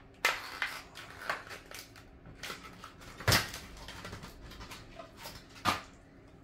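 Handling noises at a repair bench: a run of light clicks, rustles and scrapes, with two sharper knocks about three seconds in and near the end.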